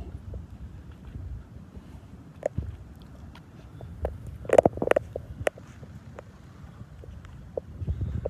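Low, uneven rumble of a breeze buffeting the phone's microphone, with a few scattered clicks and knocks, the loudest cluster about halfway through.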